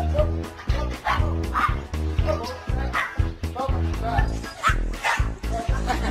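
A small dog barking several times, in short separate barks over background music with a steady beat.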